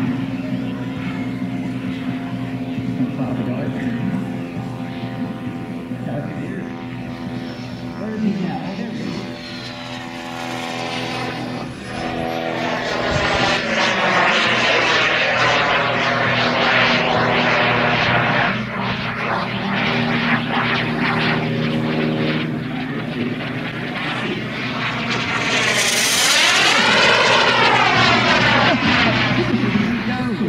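Model jet's P180 gas turbine in flight, a steady whine that swells and fades as the jet flies its circuit. Near the end comes a loud fast pass, the pitch sweeping up and then down as it goes by.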